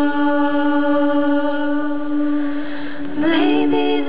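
An a cappella vocal group singing live through microphones, holding a sustained chord; about three seconds in, the voices slide up into a new chord.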